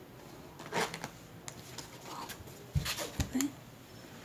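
Handling noise from craft materials on a table: a brief rustle about a second in, then two soft knocks close together near three seconds in, as the canvas board is moved and picked up.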